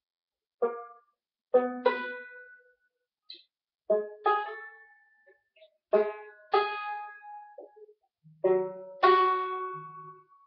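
Banjo chords picked slowly, mostly in pairs about half a second apart with a pause of a second or so between pairs, each chord ringing and fading away: a slow, step-by-step run through a chord progression.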